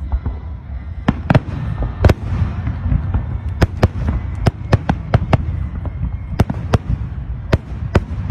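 Aerial fireworks shells bursting overhead: more than a dozen sharp bangs at irregular intervals over a continuous low rumble.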